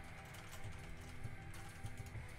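Faint computer keyboard typing, a run of irregular key clicks, over quiet background music.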